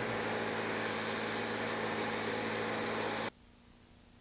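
Military truck running as it drives away: a steady, even engine hum over hiss, with no distinct chain clatter. The sound cuts off abruptly a little over three seconds in.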